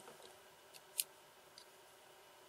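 A single short, sharp click about a second in, with a couple of fainter ticks around it, over quiet room tone.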